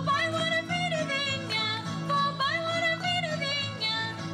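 Live Azorean folk music: a high melody line with sliding notes over strummed guitars and a steady low accompaniment.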